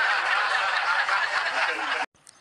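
Laughter, a steady, dense wash of it with no words, cut off abruptly at the end.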